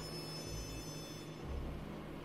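Low, steady rumble of a car's cabin while driving, swelling slightly in the second half.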